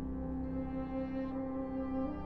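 Wind band music: the ensemble holds a sustained chord, with a new chord entering near the end.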